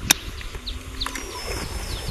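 A golf club strikes a golf ball on a short pitch shot just after the start, one sharp crisp click. Birds chirp afterwards, over a low rumble.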